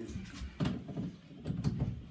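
The tester's plug being pushed into a wall socket outlet and handled, with two clunks, one about half a second in and a longer one around a second and a half.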